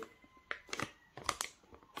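A paper trading-card multipack being handled and turned over in the hands: a few soft, scattered rustles and taps.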